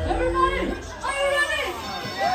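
A woman's high voice calling out through a microphone and PA system during a break in the dance track, the bass beat dropping out about half a second in.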